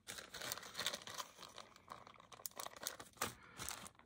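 A small clear zip-top plastic bag crinkling as it is handled, a run of irregular crackles.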